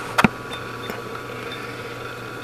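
Two quick clicks from handling a grabber-clip test lead, about a fifth of a second in, then a steady low electrical hum with faint hiss.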